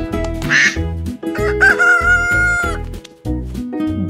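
Cartoon farm-animal sound effects over children's music with a steady beat: a short duck quack about half a second in, then a rooster crowing cock-a-doodle-doo, one long held call lasting about a second.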